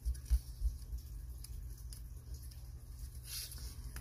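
Hands handling a paperback coloring book on a wooden table: three soft low thumps in the first second, then a brief paper rustle near the end, over a steady low hum.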